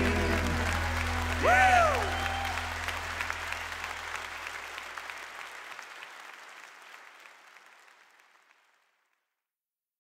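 Audience applauding at the end of a song while the band's last low chord rings and dies away, with one loud whoop about a second and a half in. The whole sound fades out steadily until nothing is left.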